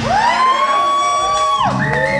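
Live metal band on stage, the drums and bass dropping out while a high sustained note slides up, holds for about a second and a half, then falls away. A second held note comes in near the end.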